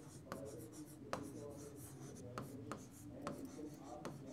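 A stylus writing on the glass of an interactive whiteboard screen: light scratchy pen strokes with several sharp taps of the tip as words are written.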